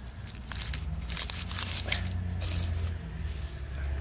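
A knife cutting down into soil at the base of an udo (땅두릅) shoot and the shoot being pulled free, dry leaves and soil crackling and crunching in a string of short sounds through the first two and a half seconds or so.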